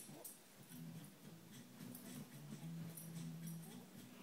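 A small dog softly whimpering in low, drawn-out tones as it settles into its bed.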